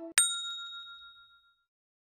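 A single bright bell-like ding, the sound effect of an animated subscribe button, struck once and ringing away over about a second and a half.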